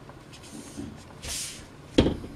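A marker stroked across pattern paper along a plastic ruler, heard as a short scratchy hiss a little past the middle. A sharp knock follows at the very end.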